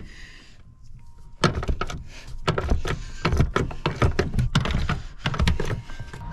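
A quick run of sharp clicks and knocks, about five a second, as a truck's rear seat is worked loose by hand. It starts about a second and a half in and stops just before the end.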